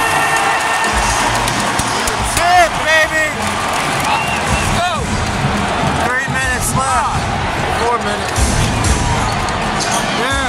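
Arena crowd noise during live basketball play, with a basketball bouncing on the hardwood and sneakers squeaking on the court in short bursts of chirps, twice.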